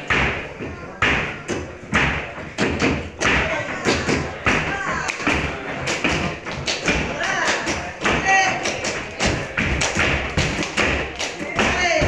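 Flamenco footwork (zapateado): a dancer's shoes striking the stage floor in a quick, uneven run of heel-and-toe beats, with short vocal calls over it.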